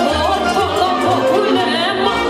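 Live Romanian folk music: a woman singing into a microphone with a wavering, ornamented voice over a trumpet, with low drum beats underneath.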